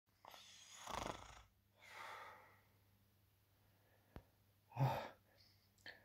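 A man breathing heavily through two long, noisy breaths, then a faint click and a short grunt just before the end.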